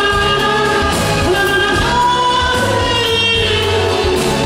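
Male pop singer holding long, drawn-out notes into a handheld microphone over a band backing with a steady bass line.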